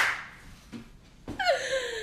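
A woman laughing: a sharp, loud burst at the very start, then about a second and a half in a long, high vocal sound that slides down in pitch.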